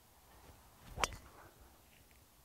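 A driver swung at a teed-up golf ball: a brief swish of the swing, then a single sharp crack as the clubhead strikes the ball about a second in.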